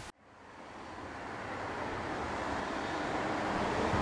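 Steady outdoor background rush, a noise without any tone or pitch, fading up gradually from near silence over the first couple of seconds.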